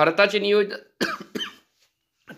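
A man's voice briefly, then two short coughs in quick succession about a second in.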